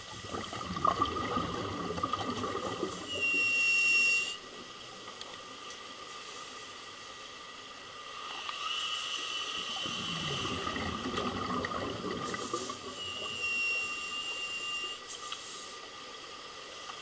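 Scuba breathing heard underwater: two long bursts of crackling exhaust bubbles from a diver's regulator, each followed by a thin, steady high whistle lasting a second or two.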